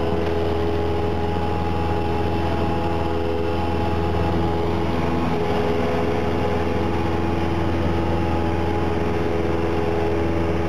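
Cessna 172SP's four-cylinder Lycoming engine and propeller running steadily in flight, heard from inside the cockpit as an even drone, with a slight change in tone about five seconds in.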